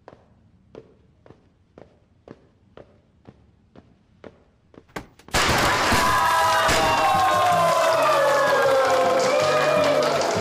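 Hard-soled dress shoes walking on a hard office floor, about two steps a second. About five seconds in, confetti party poppers go off and loud cheering and music break out.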